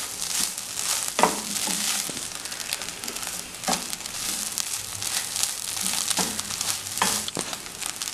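A wooden spatula stirring and scraping shredded chicken filling around a non-stick frying pan over a light, steady sizzle. A handful of sharper scrapes stand out.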